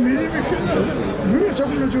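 Several people's voices talking and calling out over one another.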